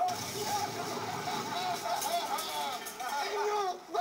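Men shouting and yelling excitedly, without clear words, over a steady noisy background.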